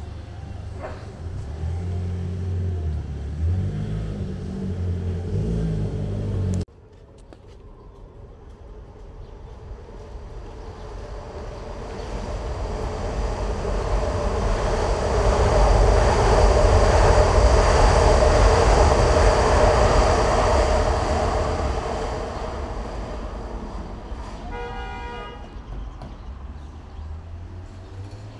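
Street traffic with a low pulsing rumble, cut off abruptly about seven seconds in. Then an elevated train passes, its rumble and rail noise swelling loud over several seconds and fading again. A short horn toot sounds near the end.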